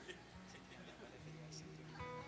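Very quiet church-hall room sound with faint murmured voices. A soft low steady note comes in about a second in.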